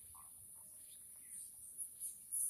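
Faint, steady high-pitched trilling of insects in the background.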